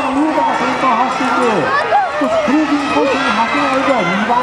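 Race announcer's continuous commentary over loudspeakers, with spectators' voices shouting and cheering underneath.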